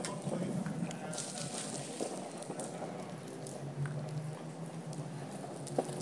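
Small wheels rolling over rough alley asphalt: a steady rolling rumble with scattered small clicks and knocks, and a brief low hum about two-thirds of the way through.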